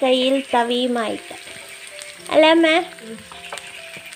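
Shallots and green chillies sizzling in hot oil in a non-stick frying pan while being stirred with a wooden spatula. Over it, a voice sings in a background song, in two loud phrases: one near the start and another past the middle.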